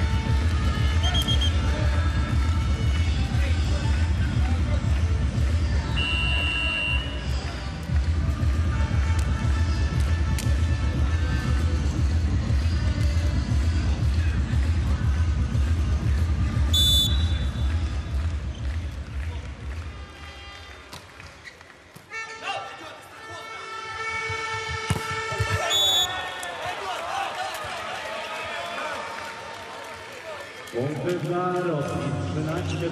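Arena music with a heavy, regular beat plays over the crowd for about the first two-thirds, and a short whistle sounds shortly before the music cuts out. Then comes the hall noise of a volleyball rally, with a second whistle a few seconds later as the point ends.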